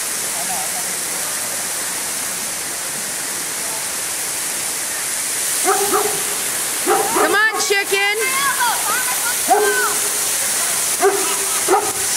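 Steady rushing of a waterfall throughout. About halfway in, short high-pitched cries that rise and fall in pitch begin to come and go over it.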